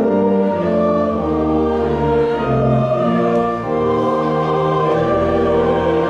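Mixed choir of men's and women's voices singing slow, sustained chords that change every second or so, with a deeper bass line entering near the end.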